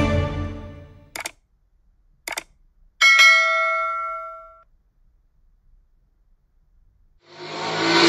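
Intro music fading out, then two short click sound effects and a bell-like ding that rings out for about a second and a half: the sound effects of a like-and-subscribe button animation.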